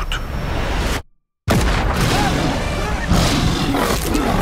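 Film-trailer sound mix: the sound cuts to dead silence about a second in, then comes back with a sudden loud boom-like hit and dense, loud sound that grows louder again near the end.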